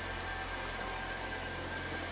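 Xiaomi TruClean W10 Ultra wet-dry vacuum running steadily in auto mode, an even whir with a faint steady hum, as its roller brush washes and vacuums a wet tiled floor.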